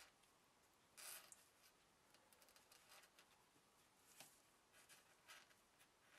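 Near silence, broken by faint, brief scratchy rustles of fingertips pressing and rubbing clay onto stiff photo paper, the clearest about a second in, with a few small ticks later.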